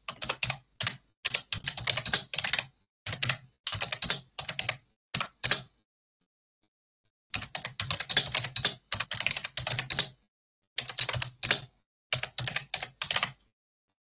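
Typing on a computer keyboard in quick runs of keystrokes, with a pause of about a second and a half midway. The typing stops shortly before the end.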